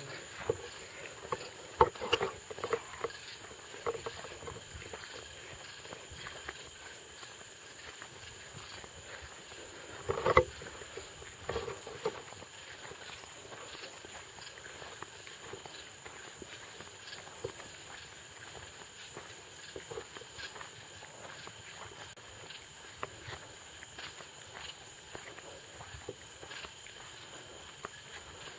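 People walking over grass at night: scattered, irregular footfalls and handling knocks, with a couple of brief murmured voices about two and ten seconds in, over a steady faint high-pitched hum.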